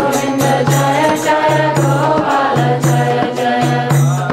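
Devotional chanting of a mantra (kirtan), sung voices over a drum and cymbal strikes keeping a steady beat.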